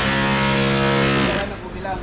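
A single held musical tone, rich in overtones, steady for about a second and a half and then fading away.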